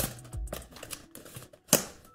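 Small cardboard lens box being opened by hand: fingertips working the tuck flap loose in a series of small clicks and scrapes, with one sharp snap near the end.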